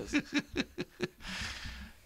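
A person laughing in quick short bursts, trailing off into a breathy exhale.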